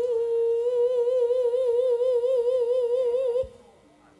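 A female Javanese singer (sinden) holds one long sung note for about three and a half seconds, steady at first and then wavering in a widening vibrato, before it stops.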